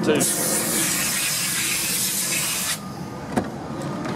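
A steady hiss for about two and a half seconds that cuts off suddenly, then a single sharp click from the SUV's driver door latch as the door is opened.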